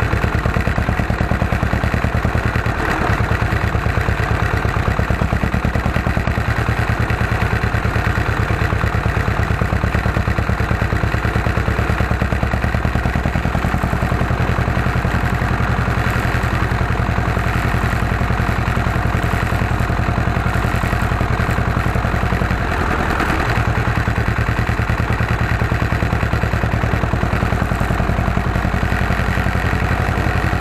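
Ursus C330 tractor's two-cylinder diesel engine running steadily on the move, heard from on board, with an even, fast beat of firing pulses. The engine note dips briefly about three-quarters of the way through, then picks up again.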